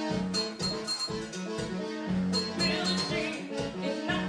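A live band playing, with electric guitars over a steady beat.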